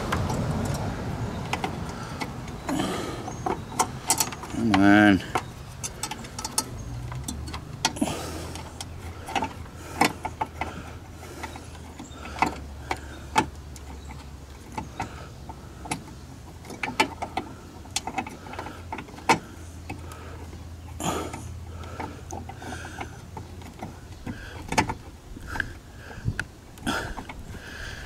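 Irregular small plastic clicks and knocks from a hand working blind inside a 2011 Chevy Traverse headlight housing, fumbling to twist a new LED bulb into its socket. A low steady hum runs through the middle.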